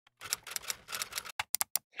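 Typewriter-style typing sound effect: a quick run of irregular key clicks, ending in a few sharp, separate clicks near the end.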